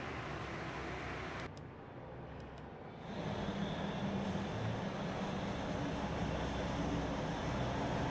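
Low, steady hum in the cabin of a Geely Okavango whose dashboard is switched on. It dips quieter about a second and a half in, then comes back a little louder with a low drone.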